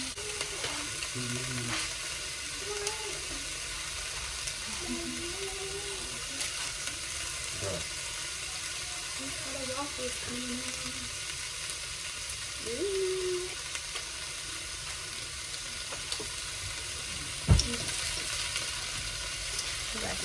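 Food sizzling steadily in a frying pan, with faint voices in the background. A single sharp knock sounds near the end.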